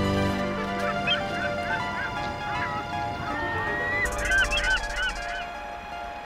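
Birds calling in runs of short, quick hooked calls, one run about a second in and a busier run from about three to five seconds, over soft sustained background music.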